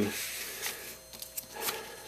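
A sheet of paper sliding across a desk, a soft rubbing hiss that fades about a second in, followed by faint handling ticks.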